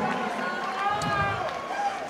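Stadium crowd noise with faint, distant voices in a short lull between speeches over the ring microphone.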